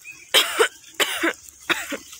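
A person coughing three times in quick succession, short loud bursts about two-thirds of a second apart.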